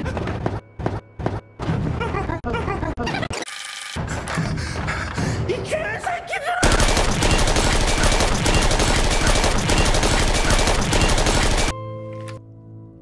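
Stutter-edited snippets of music and voices chopped with short silent gaps, then a voice rising in pitch into a scream. From about halfway through, a loud, dense barrage of rapid automatic gunfire runs until it cuts off suddenly just before the end.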